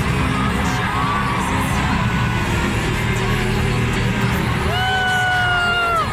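Loud music over a hall's sound system with a heavy steady bass, and a crowd cheering. Near the end a single long whoop is held, falling slightly in pitch.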